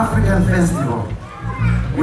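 Amplified music with a heavy, steady bass line over a PA, with a voice over it through a handheld microphone; the sound drops briefly a little past the middle.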